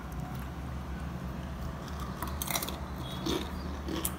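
A person biting into and chewing a crisp nacho chip with guacamole: a few crunches past the middle, over a low steady hum.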